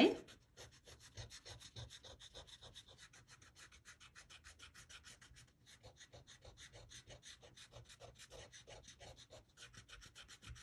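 Pencil-top eraser scrubbing quickly back and forth on watercolour paper in a fast, even rhythm, rubbing out the pencil guide lines of a dry painting.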